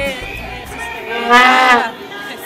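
Street-march din: low beats in the first half, then one loud held tone about a second and a half in, lasting about half a second and dropping slightly in pitch at the end.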